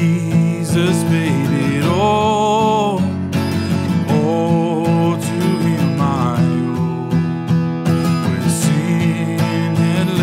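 A man singing a slow hymn to his own strummed acoustic guitar. He holds one long wavering note about two seconds in.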